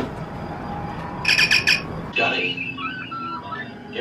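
Star Trek communicator chirp: a short burst of rapidly pulsed, high warbling tones, followed by warbling electronic beeps and blips.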